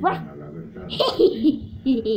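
A girl's voice making short, excited dog-like barking and yipping sounds, acting out a dog at play.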